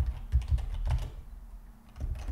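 Computer keyboard typing: a quick run of keystrokes entering a short command, which stops about a second in.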